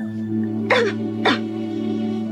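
A girl coughs weakly twice, about half a second apart, over a held chord of soft background music.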